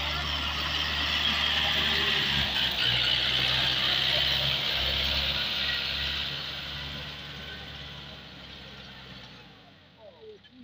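Diesel engine of a YTO 604 60 hp tractor running steadily under load while it pulls a tillage implement through the soil, fading over the last few seconds as it moves away.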